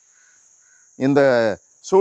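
A man's voice: after about a second of quiet, one drawn-out spoken syllable with a slightly falling pitch, then speech resuming near the end.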